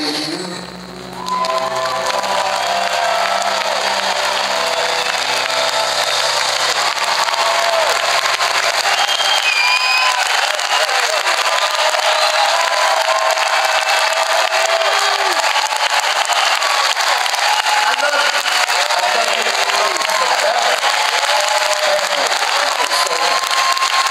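A concert audience applauding and cheering, with shouts over the clapping, while the band's final held chord rings out and fades over the first ten seconds.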